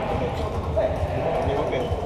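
Indistinct voices of players and spectators echoing in a large sports hall, with dull thuds of a volleyball bouncing on the court floor.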